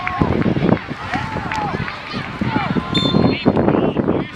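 Many voices shouting and calling over one another from players and spectators at an outdoor youth football match.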